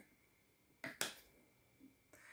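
Two short, light clicks a fraction of a second apart, a little before one second in, from hands handling a clear plastic jar of makeup sponges and setting the sponges down on a wooden table.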